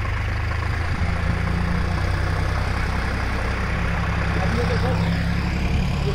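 Farm tractor's diesel engine running with a steady, low drone while it hauls a trailer of soil.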